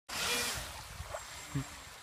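Steady rushing noise of running river water, loudest in the first half second and then settling lower, with a couple of brief faint sounds in the middle.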